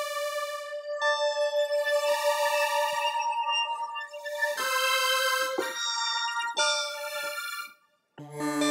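Helium quad evolving software synthesizer playing a layered patch in sustained, overlapping notes. A new note enters about a second in and then about once a second from the middle on, and the sound stops just before the end. The tone is set to crossfade among four layered sounds: bell, unison saw, choir and pad.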